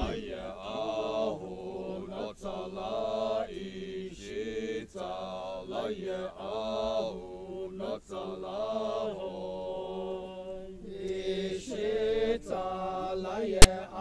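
A group of men's voices chanting a traditional Sumi Naga Ahuna song in unison, in long held phrases that rise and fall. There is one sharp click near the end.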